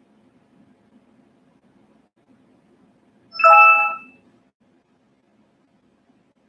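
A single short electronic chime, a ding of several steady tones at once, about three and a half seconds in, ringing for under a second over faint room noise.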